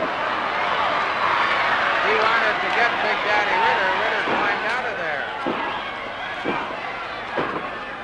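Arena crowd yelling and cheering at a wrestling match, loudest in the first half. Several thuds come from the ring, about one a second in the second half.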